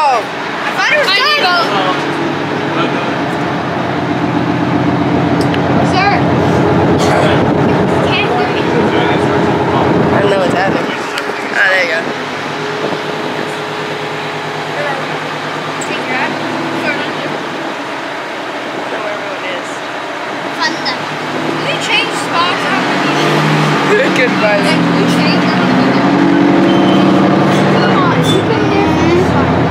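Tank engine running steadily as the tank drives, with scattered clanks; it grows louder near the end.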